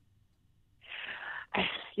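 A woman breathing heavily over a phone line before she answers: a breath lasting over half a second about a second in, then a shorter one just before her words start.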